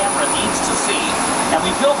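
Studio-tour tram under way, a steady rushing vehicle noise with a thin, high, steady whine over it. A tour guide's voice comes in faintly near the end.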